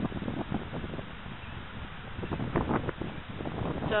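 Wind blowing across the camera's microphone, a rough noisy rush that comes and goes in uneven gusts.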